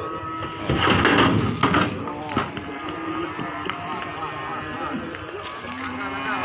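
Cattle mooing, with a loud, rough burst of sound about a second in and voices in the background.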